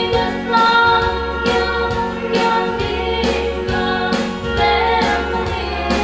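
A song with singing over a backing band: sustained bass notes and a steady drum beat.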